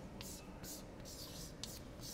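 Chalk writing on a blackboard: several faint, short scratchy strokes.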